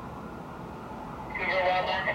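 Steady distant city hum, then about one and a half seconds in a loud, unclear voice breaks in.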